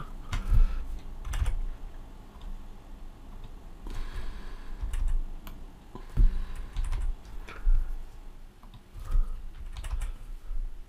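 Scattered, irregular clicks of a computer keyboard and mouse, with a few dull low knocks on the desk.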